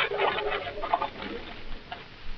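Rustling and crackling of brush and leaves, a radio-drama sound effect of people pushing into bushes to hide. It is a quick patter of small crackles that thins out after about a second.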